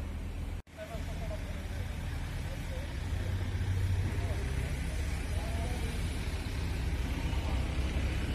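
A vehicle engine idling steadily, giving a low rumble, with faint voices in the background. The sound cuts out for a moment a little over half a second in.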